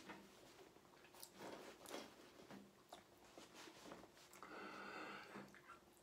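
Near silence: room tone with a few faint soft breaths and small handling noises as a euphonium is raised to the lips, and a faint, brief pitched sound about four and a half seconds in.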